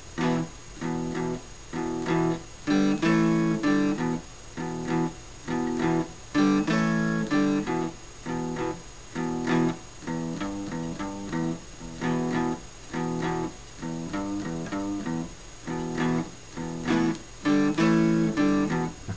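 Archtop guitar playing a short blues riff: choppy chord stabs, each stopped short, in a short-then-long rhythm, moving between E major and A major chords with a low G bass note on the low E string.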